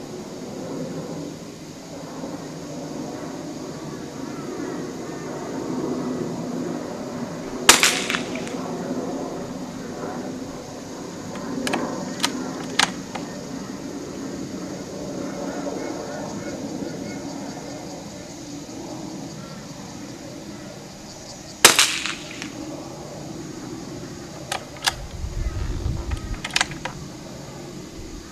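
Two rifle shots, each a sharp crack with a short ringing tail, about fourteen seconds apart. A few lighter clicks follow a few seconds after each shot.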